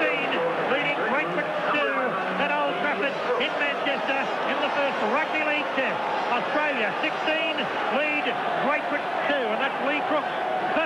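A man's voice talking throughout, over steady stadium crowd noise.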